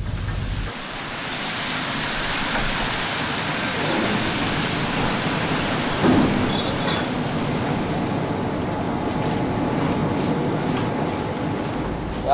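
Steady rushing noise on a fishing trawler's deck at sea, wind and water over the hum of the ship's machinery. There is a brief louder sound about six seconds in.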